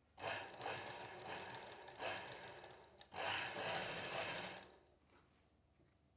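Cloth rustling and rubbing as a silk blouse is bunched and shifted by hand around a sewing machine's presser foot, in three stretches that stop about three-quarters of the way through.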